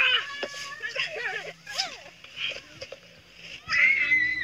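Young children shrieking and squealing in high voices at play, with a loud squeal near the end.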